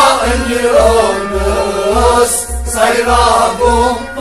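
A male singer holding long, wavering melodic lines of a sung poem over a steady drum beat of about two beats a second.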